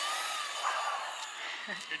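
Electric motor of a Traxxas RC truck whining as the truck drives off down the street, the whine fading away.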